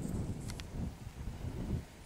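Wind rumbling on the microphone, with a faint click about half a second in.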